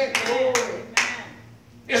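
A few sharp, irregular hand claps: a couple together at the start and one more about a second in.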